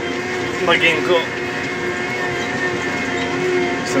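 A McCormick XTX tractor's diesel engine running steadily at about 1800 rpm, heard from inside the cab as the tractor drives across a wet, muddy field. It is a constant drone with several steady tones held through it. A brief spoken remark comes about a second in.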